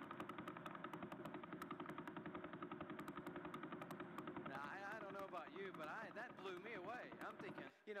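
Radio-telescope recording of the Vela pulsar played as sound: a rapid, steady train of clicks, about eleven a second, each click one turn of the spinning neutron star. Voices come in over it about halfway through, and the clicks cut off suddenly near the end.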